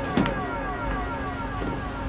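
Several tones gliding steadily down in pitch together, like a falling electronic sweep, with a sharp click about a quarter second in and a steady low hum joining near the end.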